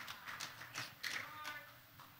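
Faint scattered taps and knocks at an uneven pace, with faint murmuring voices.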